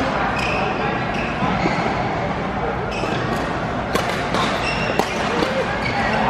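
Badminton being played in a large, echoing indoor hall: sharp racket-on-shuttlecock hits, three of them about a second apart in the second half, over shoe squeaks on the court and a steady background of voices.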